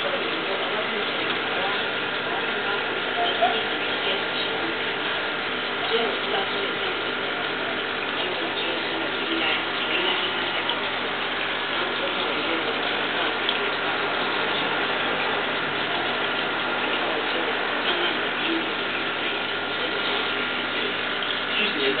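Aquarium air pump and filter running steadily: a constant hum over the hiss of moving water and bubbles, with a few faint clicks.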